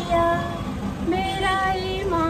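A woman singing a Hindi patriotic song, drawing out the word 'India' in long held notes.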